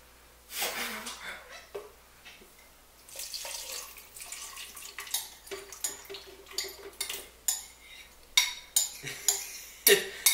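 A spoon scraping and knocking against a bowl as food is scooped out into a blender jar. The sharp clinks come thick and irregular in the second half.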